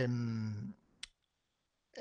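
A man's held hesitation sound "a…" trailing off in the first part, then a single short, sharp click about a second in.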